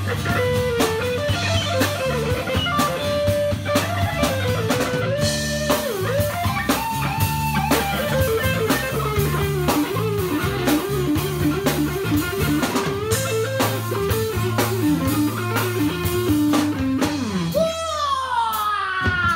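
Live electric guitar solo, a single melody line full of bent, wavering notes in a blues style, over a steady low bass line and regular drum hits. The solo ends with a long downward bend.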